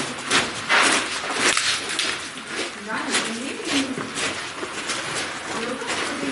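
Boots scraping and knocking on sandstone and iron rungs as a hiker climbs down a slot canyon: a string of short scuffs and knocks, with a few short low calls in the middle.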